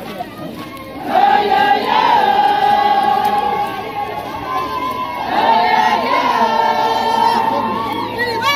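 A large group of women singing together in unison, a joyful welcome song with long held notes. The singing swells in about a second in and carries on at a steady level.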